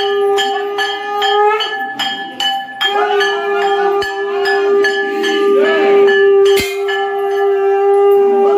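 A conch shell (shankh) blown in long held notes: one of about a second and a half, then after a short break one of about five seconds. Under it a metal temple bell is struck rapidly, about three strokes a second.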